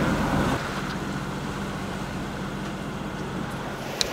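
Steady wind and sea noise aboard a sailing yacht at sea, with a low steady hum underneath; the level drops slightly about half a second in.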